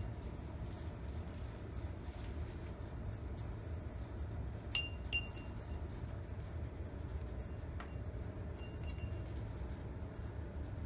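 Paintbrush knocking against a small glass jar of rinse water: a few light clinks that ring briefly, two about half a second apart near the middle and two more near the end, over a steady low hum.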